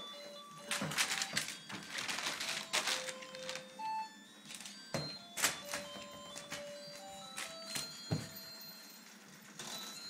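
Rustling and sharp knocks of handling and crumpled wrapping paper, densest in the first few seconds, with a few soft, separate held musical notes in the background.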